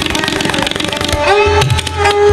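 Tabla playing a fast dhir dhir rela: a dense rapid stream of strokes on the right-hand drum, with deep bass strokes on the left-hand drum that bend in pitch. A sarangi bows a sustained melodic line underneath, sliding up in pitch past the middle.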